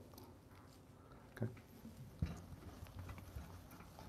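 Quiet room with a few soft knocks and one sharper thump a little past halfway, and a short spoken 'okay' about a second in.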